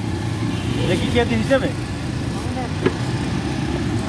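Busy fish-market background: voices talking briefly over a steady low rumble, with a single sharp click about three seconds in.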